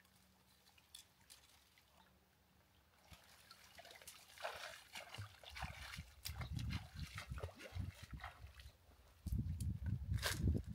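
Faint, distant splashing and sloshing of a person wading through shallow river water while dragging branches, with scattered twig snaps and crackles. Quiet at first, busier from about halfway, with a low rumble under the last few seconds.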